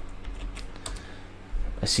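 Computer keyboard being typed on: a run of separate key clicks, denser and louder near the end, as a stock ticker is entered into a trading platform.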